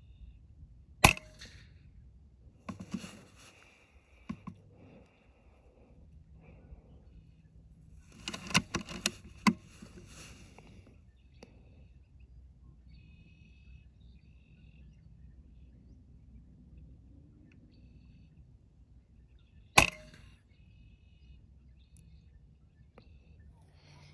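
Two sharp shots from a moderated FX Wildcat .22 PCP air rifle, one about a second in and one near the end, with quieter clicks and rustles in between.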